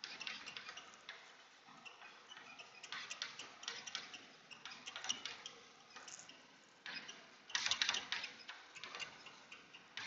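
Chalk on a chalkboard as words are written: quick runs of tapping clicks and scratches, the loudest run about seven and a half seconds in.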